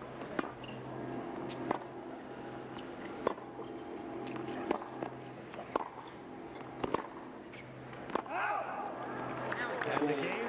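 Tennis rally on a hard court: about seven sharp racket strikes on the ball, roughly one every second and a quarter, with fainter ball bounces between them. Near the end the point finishes and the stadium crowd breaks into shouts and cheers.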